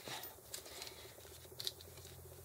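Faint rustling and light scratchy ticks of hands smoothing and pressing down paper onto a page, with a couple of small ticks about one and a half seconds in.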